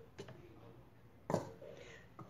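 Quiet room tone with a light click just after the start and a sharper plastic knock a little over a second in, as the plastic blender jug and its lid are handled.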